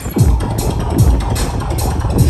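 Electronic bass music from a live DJ set, played loud over a club sound system: deep kick drums that drop in pitch, hitting about every 0.8 s, with crisp hi-hats over a heavy low end. There is a brief dip in the music right at the start.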